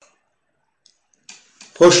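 Near silence broken by a few faint short clicks, then a man starts speaking near the end.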